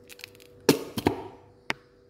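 Mayonnaise being added from a plastic container over a ceramic pot of boiled potatoes, heard as a few sharp knocks and clicks. The loudest knock comes about two-thirds of a second in with a brief ring, two more follow close together a moment later, and a light click comes near the end.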